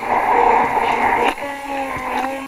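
Hand (immersion) blender running in a glass jar, whipping egg and sunflower oil into mayonnaise. It starts as a churning whir and turns into a steadier, clearer hum about a second and a half in.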